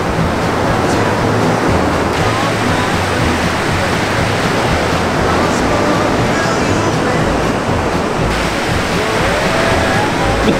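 Ocean surf breaking and washing in the shallows, a steady loud rush of water.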